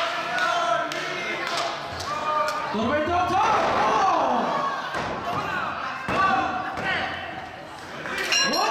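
Wrestlers' bodies landing on a wrestling ring's canvas in several sharp thuds, mixed with shouting voices from the crowd and the wrestlers.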